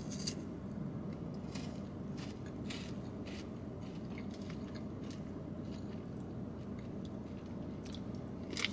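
Caramilk Breakaway chocolate wafer bar being bitten and chewed, with scattered crisp crunches over a low steady hum.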